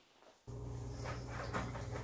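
A steady low hum with a few faint clicks and rustles, cutting in suddenly about half a second in: the room sound of a home kitchen.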